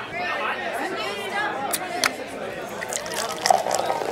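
Several people's voices chattering, with a few sharp clicks about halfway through and near the end.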